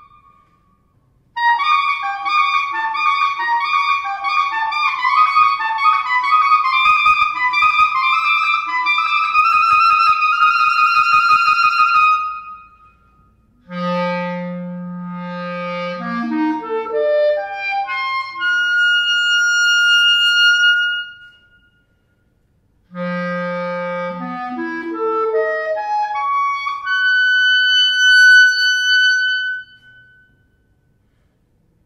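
Unaccompanied clarinet playing modern concert music: a fast flurry of notes climbing to a held high note, then twice a low held note that rises in a quick run to a long high note, with short breaks between the phrases.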